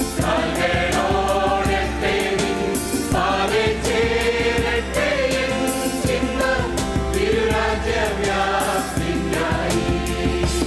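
A choir singing a hymn with instrumental accompaniment and a steady beat.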